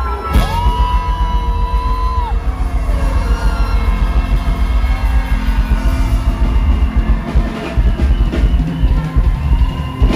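Live band playing amplified music, with a heavy bass and drum underneath and a long held high note in the first couple of seconds that bends down as it ends.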